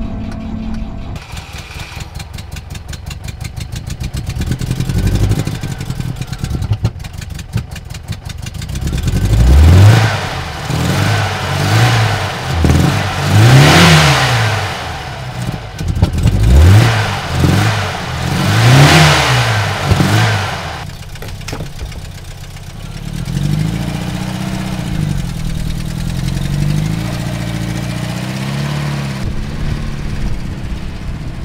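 An old Volvo 140-series car's engine is cranked and catches, then is revved up and down several times before settling into steady running near the end.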